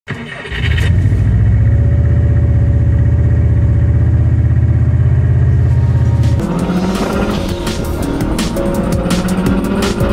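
A car engine running with a loud, steady low drone, then, from about six seconds in, music with a fast drum beat.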